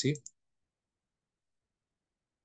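A man's voice finishing a short spoken word, then dead silence with no sound at all.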